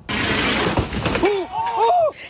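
An explosion from shelling hitting a tent camp: a sudden loud burst of noise with debris and shattering for about a second, then people shouting in alarm.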